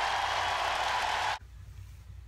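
Audience applauding and cheering at the end of a song performance. It cuts off suddenly less than a second and a half in, leaving only a faint low room hum.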